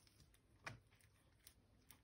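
Near silence with a few faint soft clicks from a metal teaspoon spreading processed cheese over a sheet of lavash; the clearest click comes a little under a second in.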